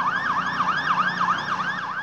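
Police siren in a fast yelp, its pitch sweeping up and down evenly about five times a second.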